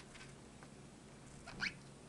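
A single brief rising squeak, like a small animal's call, about one and a half seconds in, over quiet room tone with a faint click at the start.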